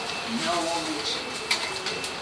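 Soft voices and a short laugh, with a single sharp click about one and a half seconds in.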